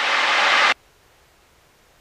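Aircraft cabin noise picked up by the pilot's headset microphone and carried on the intercom: an even rushing hiss for about three-quarters of a second that cuts off suddenly, as the voice-activated intercom closes its mic. After that there is near silence.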